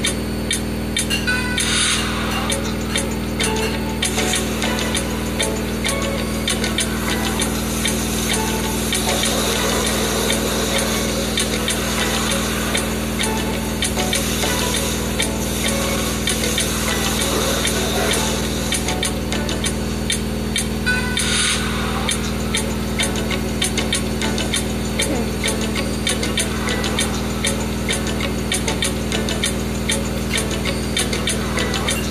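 Hoover H-Wash&Dry 300 washer-dryer on a high-speed spin, its motor and drum giving a steady hum with fine rattling ticks, under music playing in the room.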